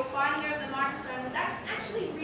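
A person's voice speaking off-microphone, fainter than the miked panel talk: an audience member asking a question from the hall.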